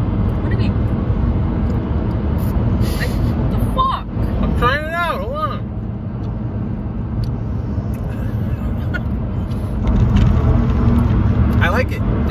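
Steady low rumble of a car's engine and road noise heard inside the cabin, with a brief hummed vocal sound about five seconds in.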